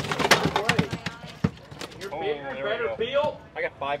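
A quick run of sharp knocks and wet slaps, lasting about a second and a half, from bass and bags being handled at a plastic weigh-in tub. Men's voices follow.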